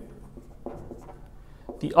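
Dry-erase marker writing on a whiteboard: faint scratching strokes as figures are written. A man's voice starts again near the end.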